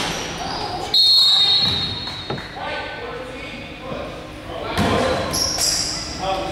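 Youth basketball game in an echoing gym: a short, shrill referee's whistle blast about a second in, a ball bounce on the hardwood floor a little after two seconds, and faint voices from players and spectators. High squeaks come near the end.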